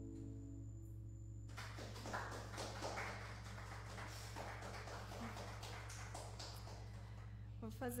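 A sustained keyboard chord dies away, then a small audience applauds with scattered claps for about six seconds. A steady low electrical hum runs underneath.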